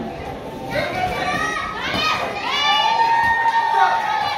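Ringside spectators, high young voices, shouting and cheering on boxers mid-bout, growing louder from about a second in, with one long drawn-out shout near the end.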